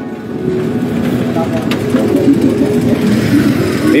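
Street traffic noise as a small motor vehicle draws nearer, growing steadily louder.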